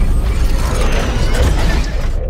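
Designed sound effects for an animated logo reveal: a loud, dense rush of noise with a deep low rumble and mechanical clicking and ratcheting. The high part cuts off abruptly at the end.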